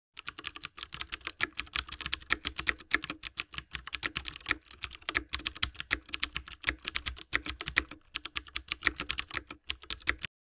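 Typing sound effect: a fast, uneven run of keyboard key clicks, several a second.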